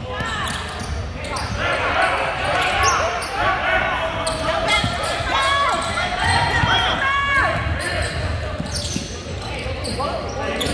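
Basketball dribbled on a hardwood gym court, short knocks of the ball against the floor, amid a steady murmur of crowd voices and shouts that echo in the large gym.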